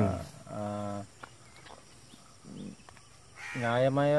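A man's voice speaking with pauses: a drawn-out vowel-like sound about half a second in, a quiet gap, then speech resuming near the end.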